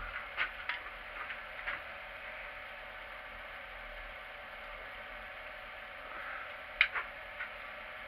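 A few light metallic clicks from a flat-blade screwdriver working a slotted screw in a clay pigeon trap arm, with one sharper click near the end, over a steady workshop hum.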